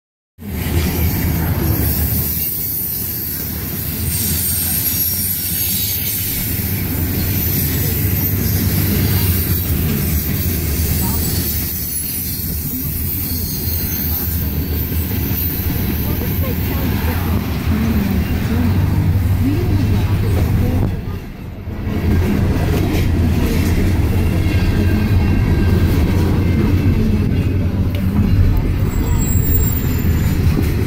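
Steady low rumble inside a moving car's cabin as it runs alongside a freight train of covered hopper cars, the road and train noise blending together, with a brief dip in loudness about two-thirds of the way through.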